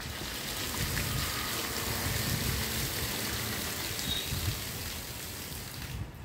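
Old water poured out of a plastic water lily tub in a steady gush, splashing onto the soil below. The pour tails off at the very end.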